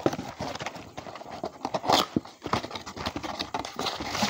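A cardboard trading-card box and its clear plastic wrap being handled and turned over: irregular crinkling and light taps, with a louder crinkle about two seconds in.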